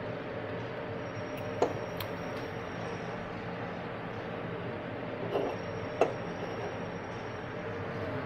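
Steady room noise with a faint high whine, broken by a few short clinks or knocks: two sharper ones about one and a half and six seconds in, and two softer ones near two and five and a half seconds.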